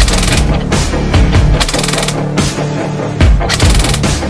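Three short full-auto bursts from a King Arms nylon-fibre M4 airsoft electric gun (AEG), each a rapid rattle of shots lasting under half a second, the bursts about a second and a half to two seconds apart, with the gun cycling at about 1500 rounds per minute. Loud background music runs underneath.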